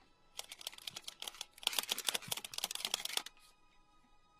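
Rapid runs of sharp metal clicks from a train conductor's hand ticket punch cutting letters into a paper ticket, in two quick flurries, over faint music.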